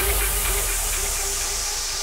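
Electronic dance music in a DJ mix: a loud white-noise sweep hisses and falls steadily in pitch over a held synth note, with no beat.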